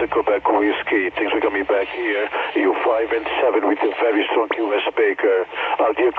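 An on-air voice received on a 10-metre single-sideband contact, played through a President Washington 10/12 m transceiver's speaker. It talks without a break and sounds thin and narrow, with no deep bass or bright top, as radio speech does.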